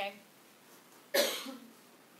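A woman coughs once, sharply, a little over a second in.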